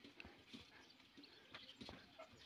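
Near silence with a few faint, short taps. Near the end comes a light, sharp tick: a badminton racket striking a shuttlecock.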